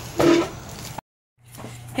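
A boy's short, loud vocal cry, pitched like a child's voice. About a second in the sound cuts off to dead silence, then comes back on a steady low hum.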